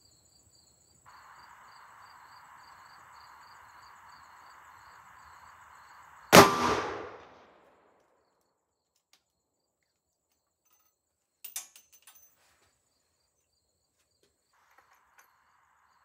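A single .357 Magnum shot from a Taurus Tracker revolver with a 6½-inch barrel, about six seconds in, with a short echo dying away over about a second. A few light clicks follow some five seconds later.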